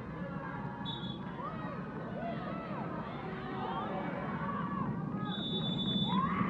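Players' voices shouting and calling on a football pitch over steady open-air ambience, with a brief high steady tone about a second in and again near the end.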